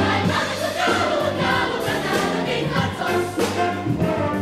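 A large youth choir singing with band accompaniment.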